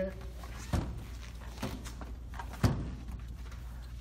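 Third-row seatbacks of a 2017 Toyota Highlander released by their pull levers and folding down onto the cargo floor. A thump comes just under a second in, then a lighter knock, then the loudest thump near three seconds in as a seatback lands.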